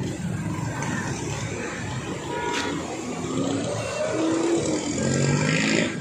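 Street traffic with vehicle engines running close by, growing louder towards the end, and a short sharp sound about two and a half seconds in.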